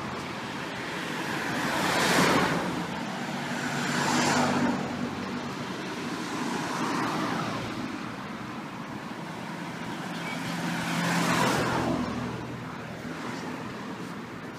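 City street traffic: about four cars pass one after another, each swelling and fading as it goes by, over a low steady engine hum.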